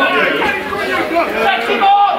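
Chatter of several voices talking at once, loud and continuous, with no single clear speaker.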